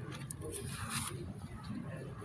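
Faint, indistinct background voices over a low murmur of room noise, with a few light clicks and scrapes.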